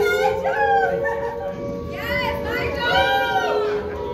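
Vocals of a recorded song playing over a bar's sound system: one long held high note runs through the whole stretch while shorter sung phrases rise and fall above it.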